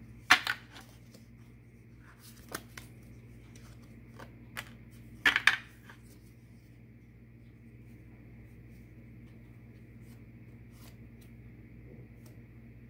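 Oracle cards being handled: a few sharp snaps and taps as cards are flicked through and drawn, the loudest a third of a second in and a quick double snap about five seconds in, over a faint steady hum.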